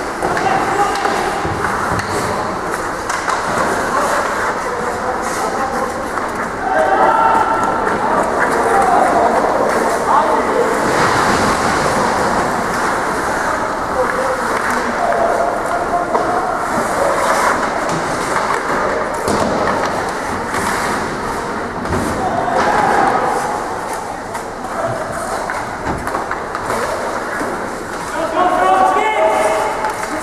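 Ice hockey play on an indoor rink: a steady rush of skates on the ice, with sticks and puck knocking and thudding now and then. Players shout at intervals, most clearly near the end.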